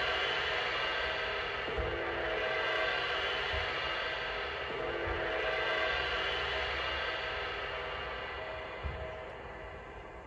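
A large gong ringing with many overtones, slowly fading.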